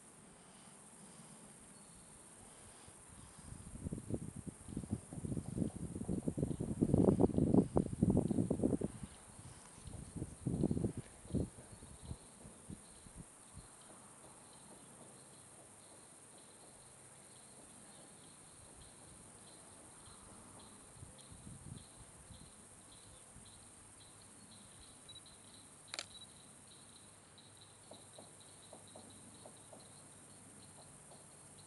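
Faint insects chirping in a high, evenly pulsing trill throughout. A loud, rough rumbling noise runs from about three to nine seconds in and returns briefly a second or two later. A single sharp click comes near the end.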